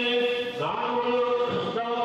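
A group of voices chanting a devotional text in unison, in long held notes that shift pitch a few times.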